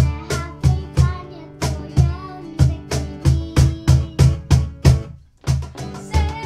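Live acoustic band music: strummed acoustic guitar and a cajón keeping a steady beat of about three strikes a second, with a girl singing over it in the first part. The music breaks off briefly just after five seconds, then the beat resumes.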